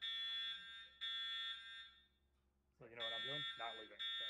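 Building fire alarm sounding: high-pitched electronic beeps about a second apart, two in a row, a pause of about a second and a half, then the next one starting near the end, part of a repeating three-beep evacuation pattern. So loud.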